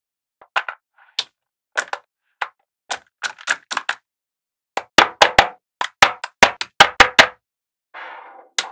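Small metal magnetic balls clicking as panels of them are snapped and pressed into place. The clicks are sharp and irregular, coming quicker and louder in a cluster from about five seconds in.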